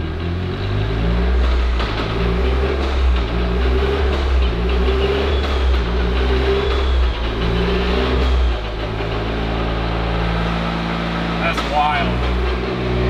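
Toyota GR Corolla's turbocharged three-cylinder engine running with the drivetrain in gear through a newly fitted Kotouc sequential gearbox, the engine note stepping up and down in pitch as the gears change.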